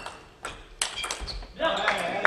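Celluloid-type table tennis ball cracking off paddles and the table in a few sharp clicks during a rally. About one and a half seconds in, the crowd breaks into applause and shouts as the point ends.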